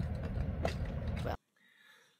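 A low, steady outdoor rumble that cuts off abruptly about one and a half seconds in, leaving near silence.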